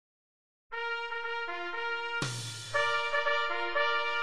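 Wind band starting a brisk march: brass come in with a quick stepping line less than a second in, then the full band joins with low brass in a louder entry about two seconds in.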